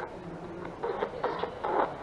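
Handheld spirit-box radio scanner sweeping through stations: a faint hum, then short choppy bursts of static and clipped radio fragments in the second half, which the investigators hear as a voice saying 'My name's James'.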